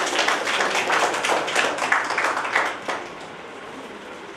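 Audience applauding: a short round of hand clapping that dies away about three seconds in.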